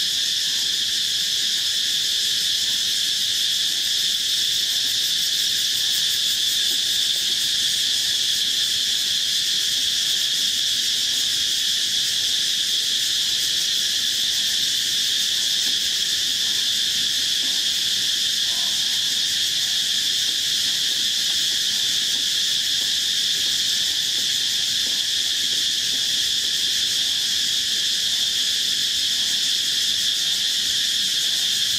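Jungle insects in a really loud, unbroken chorus: several high, steady buzzing trills at different pitches layered into one constant drone.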